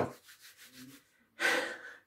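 A man's sharp in-breath, a short hissing intake about one and a half seconds in.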